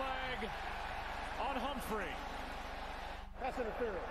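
Quiet speech, a TV commentator on the football broadcast, in short phrases over a steady background haze.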